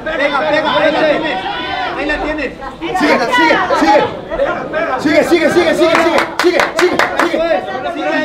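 Several voices of spectators and corner people shouting and talking over one another, sounding like a large hall, with a brief run of sharp knocks about six to seven seconds in.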